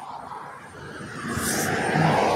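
A car passing close by on the road, its tyre and engine noise swelling steadily and loudest near the end.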